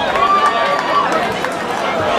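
Crowd of spectators shouting and calling out at a boxing bout, many voices overlapping, with one voice holding a long shout through the first second.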